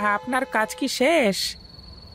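A man speaking in Bengali for about a second and a half, then a quieter stretch. A steady high tone like crickets sits underneath.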